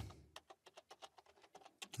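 Faint computer keyboard typing: a quick, even run of keystrokes, about six a second.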